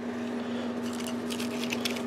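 Faint handling noises, light rustles and clicks, as an inkjet printhead's contact board is moved about on a paper towel, over a steady low hum. The clicks cluster about a second in.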